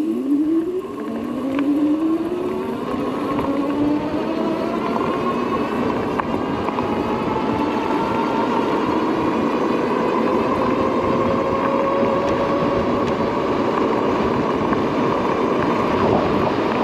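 Electric bike's motor whining under acceleration over the rush of wind and tyre noise. The whine rises steadily in pitch through the first few seconds, then climbs slowly as the bike nears its 28 mph top speed.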